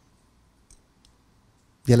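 A pause in a man's talk into a handheld microphone: near-quiet room with two faint small clicks about a second in, then his voice resumes right at the end.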